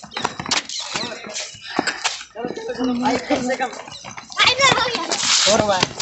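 Several people's voices talking and calling out, getting louder and higher in the second half, with sharp knocks in the first couple of seconds that fit footfalls on concrete steps.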